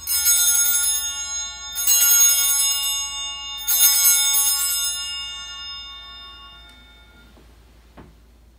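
Altar bells rung three times at the elevation of the consecrated host, each ring a bright, many-toned peal about two seconds apart that rings on and fades, the last dying away over several seconds.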